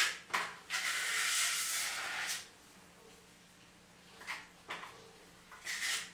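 A plastering trowel scraping wet compound across old wall tiles: two quick scrapes, then one long stroke lasting about a second and a half, then three short strokes near the end.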